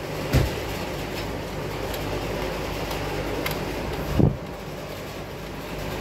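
Turbocharged direct-injection Volvo engine running steadily with a compression gauge fitted to one cylinder, during a running compression test. Two brief low thumps stand out, one about half a second in and one a little after four seconds.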